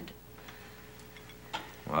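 A pause between lines: faint room tone with a steady hum and a few faint ticks, then a man starts speaking near the end.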